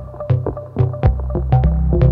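Eurorack modular synthesizer playing a generative patch: short stepping synth notes with sharp percussive clicks, about four a second. A sustained low bass comes in about a second in.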